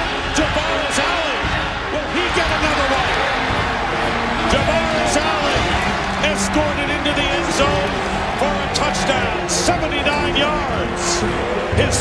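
Football stadium crowd cheering and shouting, a dense mass of many voices, with music playing underneath and scattered sharp knocks.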